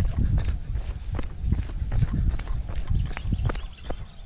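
Running footsteps on a paved path, picked up by a hand-held GoPro Hero 7 Black's internal microphone: rhythmic low thumps, two or three a second, over a steady low rumble, with scattered sharp clicks from the camera being jostled.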